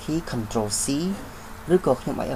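A man speaking in Khmer, narrating steadily with short pauses.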